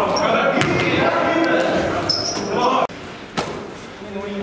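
Basketball game sounds in an echoing gym: players' voices shouting, sneakers squeaking on the court and the ball bouncing. About three seconds in the sound drops suddenly to quieter court noise with a few thuds.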